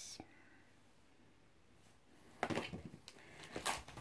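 Packaging being handled as cigarette packs are put down and the next items are picked up: a quiet pause, then a quick run of short rustles, crinkles and knocks in the second half.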